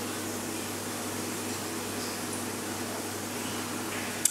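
A steady low mechanical hum over an even hiss, unchanging throughout.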